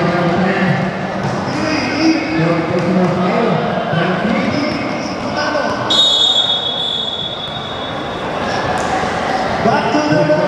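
Basketball game sounds in a large, echoing hall: balls bouncing on the court under many overlapping voices of players and spectators. About six seconds in, a high steady tone sounds for about a second and a half.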